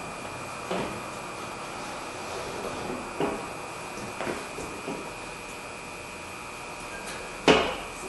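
Scattered soft knocks and bumps as the rubber window run channel is pushed by hand into the door frame of a 2008 Ford F250, with one louder thump near the end.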